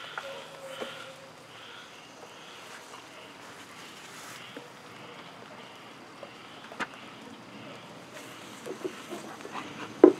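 Faint, steady hiss of light rain, with a few sharp knocks of wooden hive boxes being handled and set in place; the sharpest knock comes about seven seconds in, and a few more come near the end.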